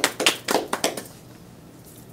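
Brief hand clapping from two people: a quick run of claps that stops about a second in.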